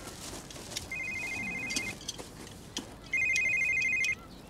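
Mobile phone ringing with a trilling electronic ring of two close high tones: two rings about a second long each, roughly two seconds apart.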